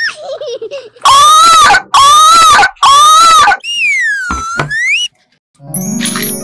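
Three loud wailing cries, each under a second, then a swooping tone that dips and rises back, and a ringing sparkle chime near the end: cartoon-style sound effects.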